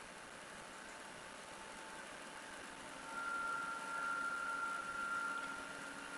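Faint steady hum and hiss of an indoor swimming pool, with a thin high whine coming in about three seconds in as the level rises a little.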